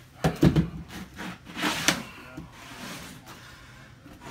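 A few sharp knocks and clunks on a plywood floor, a cluster about half a second in and another near two seconds, with quieter handling noise between.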